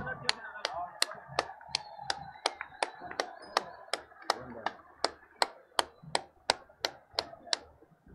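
Hand claps in a steady rhythm, about three a second, each one sharp and distinct, over a faint crowd murmur.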